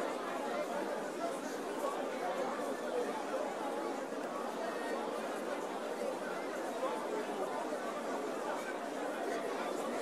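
A congregation praying and praising aloud all at once: many voices overlapping in a steady babble, with no single speaker standing out.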